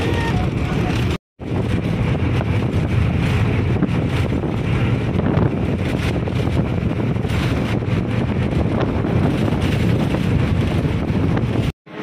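A moving bus heard from inside: a steady rumble of engine and road, with wind buffeting the microphone through the open window. The sound drops out briefly about a second in and again just before the end.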